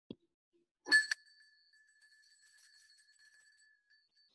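A small bell struck sharply twice in quick succession about a second in, then left to ring with a clear high tone that slowly fades over nearly three seconds. A soft click comes just before it.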